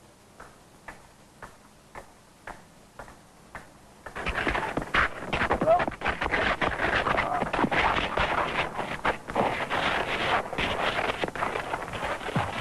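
Footsteps clicking on pavement at about two steps a second. About four seconds in they give way to a sudden loud scuffle of a man being attacked: scraping, blows and strained cries.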